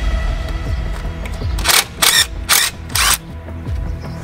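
Four short bursts of a cordless power wrench working the brake caliper bolts, starting about a second and a half in, over background music with a steady bass beat.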